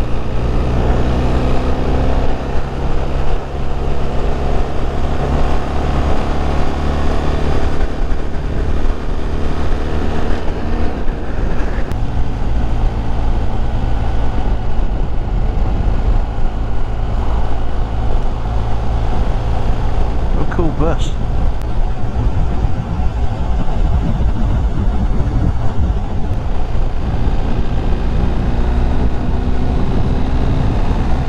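BMW motorcycle engine running steadily under way, heard from an on-bike camera with heavy wind rumble on the microphone. The engine note climbs gently in the first several seconds as the bike picks up speed.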